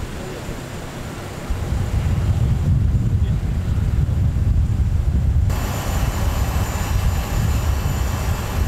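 Outdoor airport apron noise: a steady low rumble of aircraft and vehicle noise. A brighter hiss joins abruptly at a cut about five and a half seconds in.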